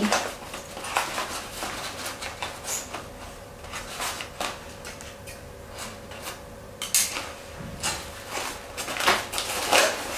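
Newspaper wrapping paper crinkling and rustling in irregular bursts as the bouquet's base is handled and tied with string. There is a sharper crackle about seven seconds in.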